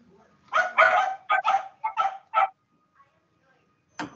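A dog barking: a quick run of about half a dozen barks over two seconds.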